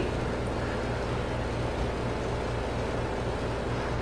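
Steady low hum and hiss of background room noise, even throughout, with no distinct events.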